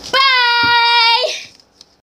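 A girl singing one long, steady high note for about a second, then breaking off.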